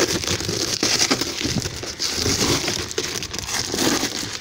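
Cardboard shipping box being torn open by hand: flaps and packing tape ripping, with irregular crackling and rustling of cardboard and paper.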